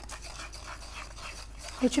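Faint scraping of a wooden spoon stirring ground spices in a clay bowl. Near the end a woman starts speaking.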